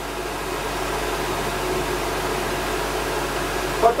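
Old Soviet-era wall-mounted electric hand dryer running, blowing hot air in a steady rush with a low motor hum.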